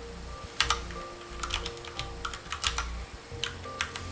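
Computer keyboard typing: irregular, quick keystroke clicks as commands are entered at a terminal, over a low steady hum.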